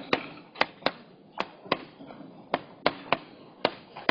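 Chalk tapping and knocking against a chalkboard as words are written, about nine sharp taps at irregular intervals, one at the start of each stroke.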